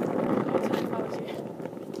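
Steady rough noise of small wheels rolling over asphalt, slowly fading.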